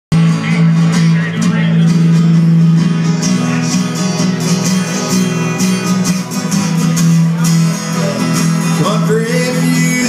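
Country band playing the instrumental opening of a song: several acoustic guitars strummed together over a steady electric bass line.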